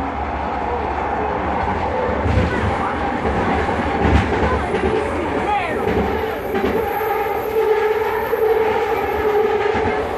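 Vancouver SkyTrain car with linear-induction motors running along the elevated guideway, heard from inside the car. A steady motor whine sits over a constant wheel-and-track rumble, with a couple of thumps about two and four seconds in.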